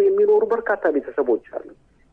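Speech only: a voice reading radio news in Amharic, pausing briefly near the end.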